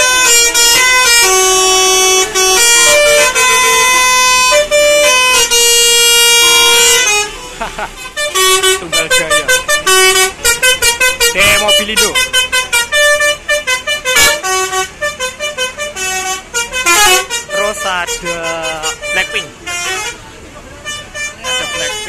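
A bus's multi-tone 'basuri' telolet horn plays a loud stepping tune for about seven seconds, then stops suddenly. After that come a crowd's voices and shouting.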